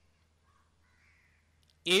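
Faint, short bird calls, a few in turn, heard in a near-silent pause in a man's speech. A man's voice starts again just before the end.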